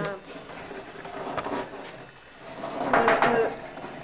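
Indistinct voices mixed with a few knocks and a rattling clatter, loudest about three seconds in.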